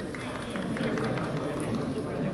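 Field sound of a football match: shouting voices of players and coaches over the steady background noise of the ground.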